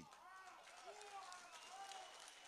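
Near silence, with faint voices in the background.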